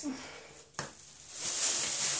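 Plastic crinkling and rustling as items are handled: a sharp click just under a second in, then the crackle grows louder and denser through the second half.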